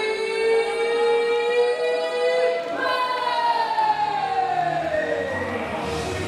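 A woman ring announcer's amplified voice over the hall's PA, calling out in two long drawn-out notes, the second sliding steadily down in pitch. Walk-out music with a bass beat comes in about four seconds in.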